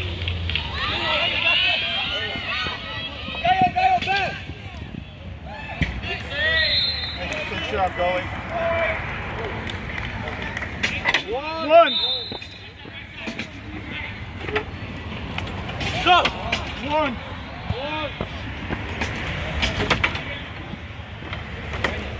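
Shouting voices of players and sideline onlookers during a box lacrosse game, with scattered sharp clacks of sticks and ball. The loudest shout comes about two thirds of the way in.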